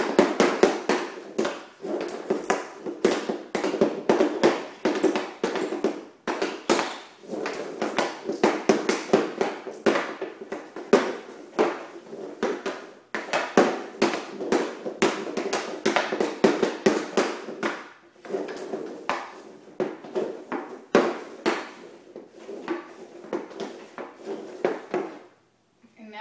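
Hockey stick blade working a 6-ounce rubber puck on plastic dryland flooring tiles: rapid stickhandling, a fast, uneven stream of clacks and scrapes with a few short pauses, stopping about a second before the end.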